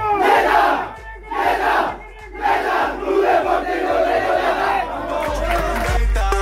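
A football team shouting a war cry together in a huddle. There are short loud shouts in unison about a second apart, then a longer run of shouting and chanting.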